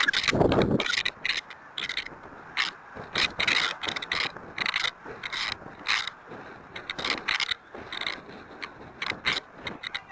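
Model rocket's onboard mini camera picking up the rocket as it descends: irregular scraping, rattling and knocking of the camera and airframe. A louder rush of wind-like noise comes in the first second.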